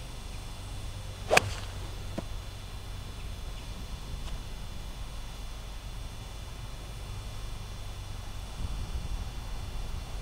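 One sharp strike about one and a half seconds in: a 7-iron hitting a golf ball off the tee, with the slightly fat, "little chunky" contact of a club catching a bit of turf. A much fainter tick follows soon after, over a low steady outdoor background.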